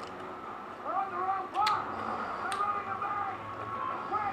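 A person eating by hand and chewing, with a few small sharp clicks, under faint higher-pitched voices in the background.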